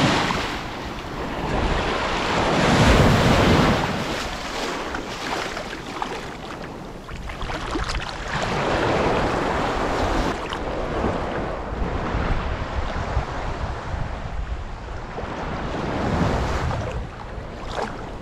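Small waves washing in and breaking at the edge of a sandy beach, the surf rising and falling every few seconds, with wind rumbling on the microphone.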